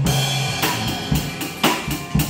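Live acoustic drum kit played with sticks over a karaoke backing track: snare and bass drum strokes with cymbals, keeping a steady beat along with the recorded music.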